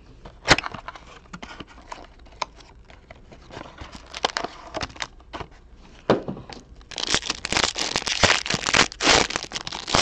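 A small cardboard trading-card box being handled and opened, with scattered light clicks and taps. About seven seconds in, the foil wrapper inside is pulled open and crinkles loudly.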